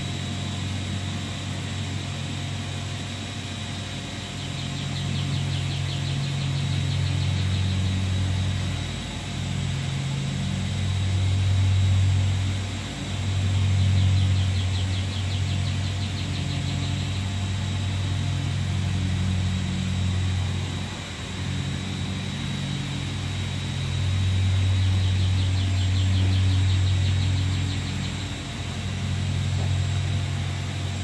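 Low, steady hum of a motor running to inflate a lifting airbag under a hot tub as the tub is raised; the hum swells and dips several times.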